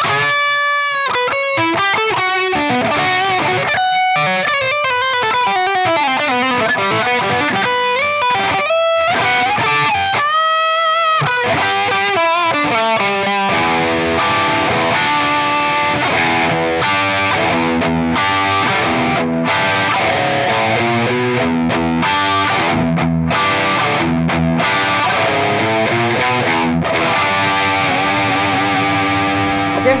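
Fena TL DLX90 electric guitar with P90 pickups played through heavy overdrive: lead lines with wide string bends and vibrato for about the first half, then faster riffing with repeated chords and notes.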